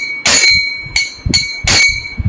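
Small brass hand cymbals (kartals) struck in a steady kirtan rhythm: about four bright, ringing clashes, some with a low thump under them, keeping time between sung lines.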